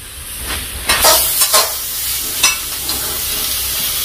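Pork skin frying in hot oil in a wok, sizzling steadily, with a few short scrapes of a utensil stirring the pieces, about a second in and again before the middle.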